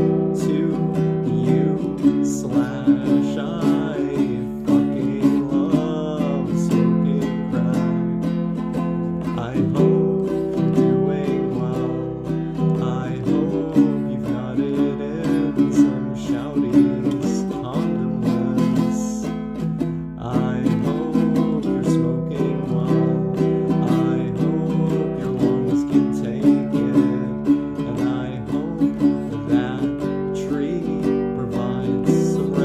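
Folk punk song played on a strummed acoustic guitar, with a steady, even strumming rhythm.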